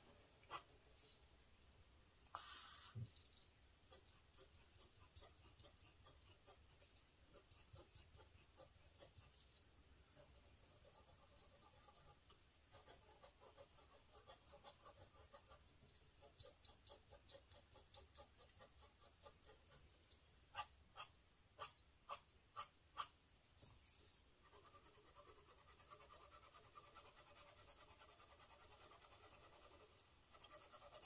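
Faint scratching of a medium stainless steel #6 Bock fountain pen nib on paper as short strokes are written. There is a quick run of about five sharper strokes about two-thirds through, and a steadier scratching near the end.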